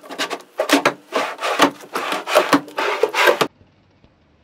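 Wooden drawer on metal drawer slides being worked in and out, a run of rubbing, scraping strokes that cuts off suddenly about three and a half seconds in.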